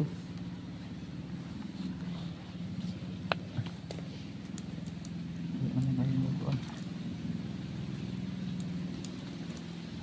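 An engine drone that holds steady, swelling slightly around the middle, with a couple of faint clicks about three and a half seconds in.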